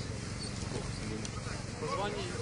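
Faint, indistinct voices talking over a steady low rumble on the microphone, with a few soft clicks.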